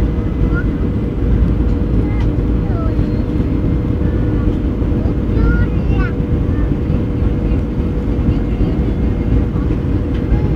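Steady low rumble of jet airliner engines with a constant whining hum, even in level throughout.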